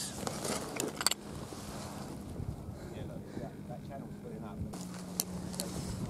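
A steady low engine hum in the background, growing a little stronger near the end, with a few sharp clicks of stones and gravel being moved underfoot or by hand.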